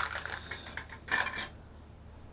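A small hinged metal tin is opened by hand: a sharp click at the start, then light metallic handling and rustling. A second short rustle comes just after a second in.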